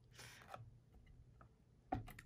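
Fiskars paper guillotine trimmer cutting a strip of cardstock: a short, faint swish near the start, then a few faint clicks of the trimmer being handled.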